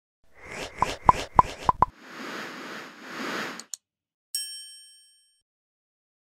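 Animated logo sound effect: a quick run of five pops, then two whooshing swells and a short click, ending in a single bright chime that rings and fades away.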